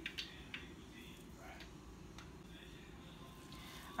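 Faint, scattered small clicks and squelches of fingers pinching and rubbing canned salmon in a plastic bowl, over a low steady room hum.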